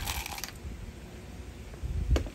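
Steel coil spring of a gel blaster being drawn out of its housing: a short metallic jingle in the first half second, then faint handling noise and a light click near the end.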